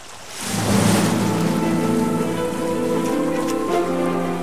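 Outro animation soundtrack: a swell that breaks about half a second in into a rain-like hissing rush over held, sustained synth chords.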